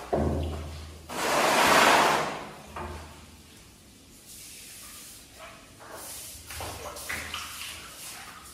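A long-handled broom sweeping across a tiled floor: one long, loud swish about a second in, then lighter, scattered brushing strokes.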